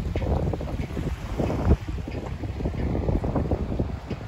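Wind buffeting the microphone: a low, uneven rumble that rises and falls in gusts.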